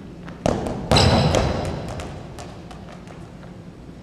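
Rubber playground balls being kicked and hitting the gym wall and hardwood floor: a thud about half a second in, then a louder one that rings out through the large hall, followed by a few lighter taps of balls bouncing.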